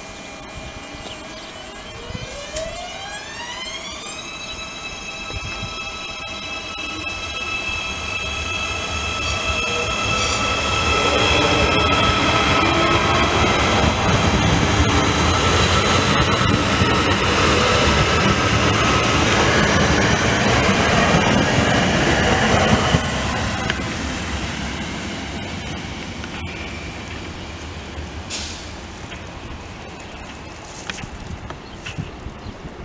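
Passenger multiple-unit train passing close through the station. A whine rises in pitch over the first few seconds and then holds steady, while the wheel-on-rail running noise builds to its loudest in the middle and fades toward the end.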